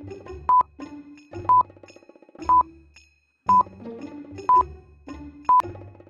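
Countdown timer beeping: six short, high tones, one each second, over light background music.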